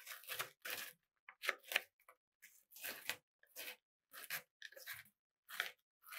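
Kitchen knife chopping Kinder Bueno wafer bars on a plastic cutting board: short, crisp crunches of the wafer breaking, about two a second at an irregular pace.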